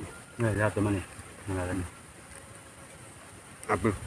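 A man humming "mm" with his mouth full as he savours food: two short hums in the first two seconds and another near the end, over a steady high-pitched hiss.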